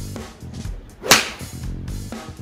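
A golf driver strikes a ball off the mat about a second in: one short, sharp crack of impact over background music.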